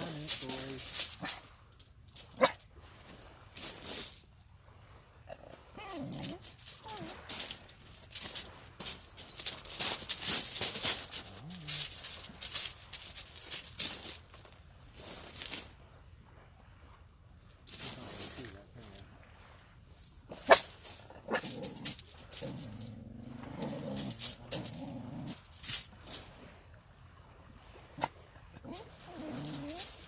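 A dog whining in short rising and falling whimpers at intervals, among repeated brief hissy scuffs and rustles.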